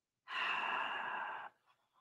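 A man's long sigh: one breath out lasting a little over a second.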